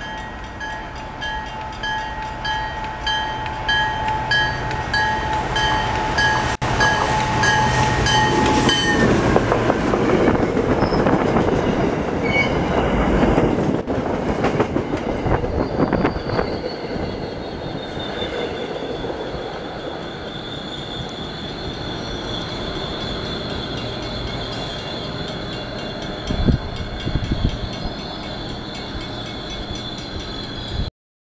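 MBTA commuter rail train with a diesel locomotive approaching and passing close by. For about the first nine seconds it sounds a steady warning horn. Then the loud rumble and clatter of wheels on rail take over as the coaches pass, with a high steady wheel squeal in the later part and a few heavy thuds near the end.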